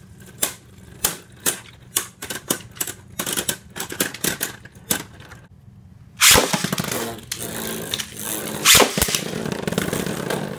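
Caynox C3 4Flow Bearing and Cognite C3 6Meteor Trans Beyblade Burst tops spinning and clashing in a plastic stadium, giving repeated sharp clacks two or three a second. After a brief lull about six seconds in, a new launch lands them in the stadium with a sudden loud clatter, followed by a continuous whirring scrape with more hard hits.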